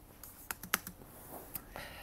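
Four sharp computer-key clicks in quick succession, about half a second to a second in.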